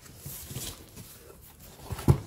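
Faint rustling and scraping of corrugated cardboard as the flaps of a guitar shipping box are opened, strongest in the first second.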